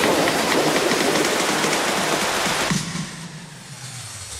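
Electronic background music ending in a dense hissing wash with a faint regular pulse, which drops away about three seconds in, leaving it much quieter.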